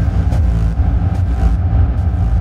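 Hardstyle track: a loud, steady, distorted low synth drone holds without any kick drum, a short break between kick patterns.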